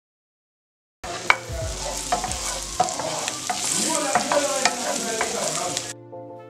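Sliced mushrooms sizzling in hot oil in a non-stick frying pan, starting suddenly about a second in, with many sharp clicks and knocks as they drop into the pan and are stirred with a wooden spatula.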